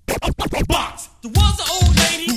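Hip-hop music opening with a quick run of turntable scratches, then a drum beat with a deep kick coming in about a second and a half in.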